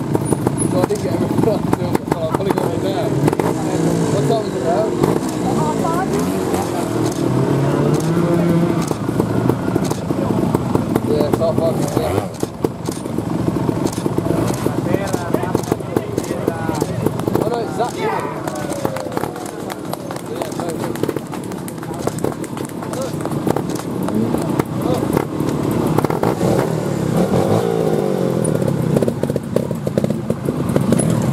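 Trials motorcycle engines revving up and down in short throttle blips, with people's voices throughout.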